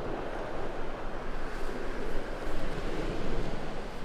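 Surf washing onto a sandy beach, a steady rushing noise that swells a little in the middle, with wind rumbling on the microphone.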